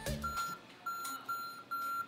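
Lenovo ThinkPad X250 BIOS beeping its error code at power-on: one short beep, a pause, then three beeps in quick succession at the same pitch, part of the 1-3-3-1 pattern that signals a memory fault. The beeps go on even after the RAM module was cleaned and reseated.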